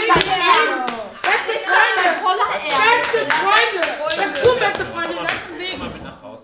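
Rhythmic hand clapping, about two to three claps a second, with several young people's voices calling out over it; the clapping dies away shortly before the end.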